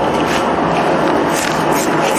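A knife slicing kernels off cooked corn cobs into a metal basin: irregular short scrapes over a steady noisy background.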